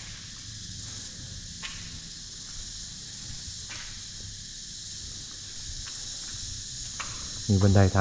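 Steady high-pitched chorus of insects, with a few faint clicks scattered through it.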